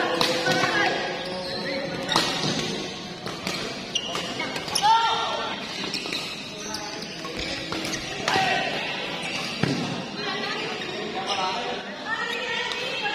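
Badminton doubles rally: sharp racket strikes on the shuttlecock every second or two, with sneakers squeaking briefly on the court floor and voices in the hall.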